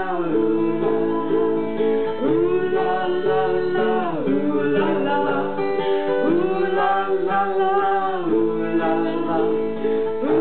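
Music: a strummed acoustic guitar under long held melody notes that come in phrases of about two seconds, with no words.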